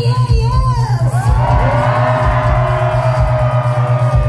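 Indie rock band playing live over a steady, evenly pulsing bass-and-drum beat. Above it a melody line settles into one long held note from about a second in until near the end.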